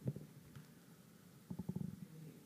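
Faint, muffled voice from off-microphone, low and indistinct, with a knock at the very start and a short low fluttering stretch near the end.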